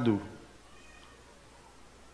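A man's voice trailing off at the end of a drawn-out spoken word, then a pause with only faint room tone.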